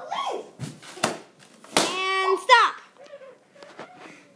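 Latex balloon being squeezed against a padded armchair to burst it without teeth or nails: a sharp snap about a second in, then a louder sharp pop near the middle. Right after the pop a girl's voice cries out, holding a note and then falling.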